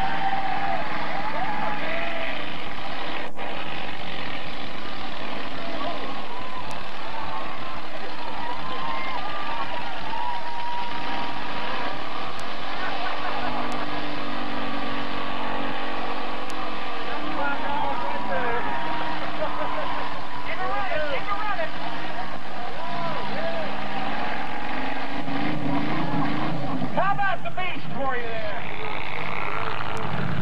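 Mud-bog buggy's engine revving hard as it churns through a mud pit, its pitch climbing and falling in long sweeps, loudest in a burst of revs near the end.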